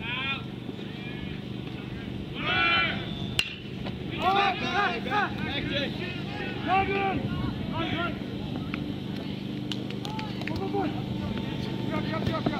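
Ballplayers shouting and yelling, with several drawn-out yells. A single sharp crack of a metal baseball bat hitting the ball comes about three and a half seconds in.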